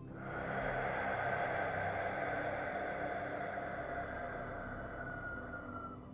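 A man's long, deep breath through the mouth, starting suddenly and slowly fading over about six seconds, over a soft, steady synth pad.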